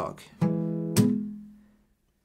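Acoustic guitar with a capo at the fourth fret: a single bass note rings, then about a second in comes a sharp, percussive, lightly muted strum through the whole chord, which is the accented stroke on beat 2. The ringing then dies away.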